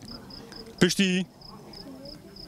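An insect chirping in an even, high-pitched rhythm, about five chirps a second. A man's voice breaks in briefly, loudly, a little under a second in.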